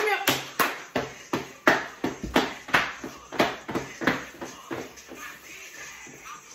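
Hand claps in a fast, even rhythm, about three a second, fading out after about four seconds, over faint music.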